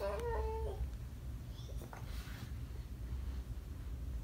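A single short, high-pitched vocal call lasting under a second at the start, then only faint room noise with a low hum and a few light ticks.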